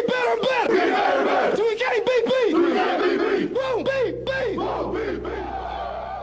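A football team's players shouting a chant together in short, rhythmic bursts, about three a second. The shouting fades toward the end as a low hum comes in about halfway through.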